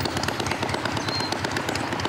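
Steady outdoor background noise: an even rush with no distinct events.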